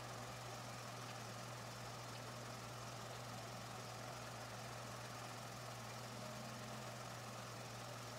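A steady low hum under a faint even hiss, unchanging throughout, with no distinct strokes or knocks.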